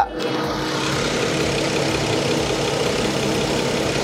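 BMW 535i GT xDrive's 3.0-litre turbocharged straight-six petrol engine idling steadily with the bonnet open. The idle is smooth and quiet, with no engine or belt noise, the sign of an engine in good condition.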